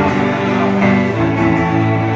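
Live music: an acoustic guitar strummed through a chord passage, without singing.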